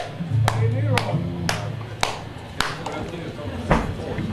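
Sharp percussive clicks in a steady beat, about two a second, over a low sustained bass tone and faint voices. The clicks stop for a moment and then come once more near the end.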